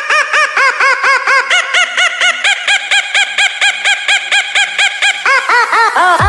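A fast, even run of short honking, duck-like notes, about six a second, stepping up and down in pitch like a melody, with no bass underneath.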